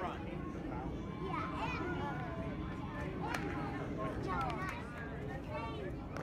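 Scattered distant voices of spectators and players calling out at a youth baseball game, with one sharp knock about halfway through.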